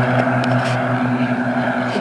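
A steady engine drone holding one low, unchanging pitch.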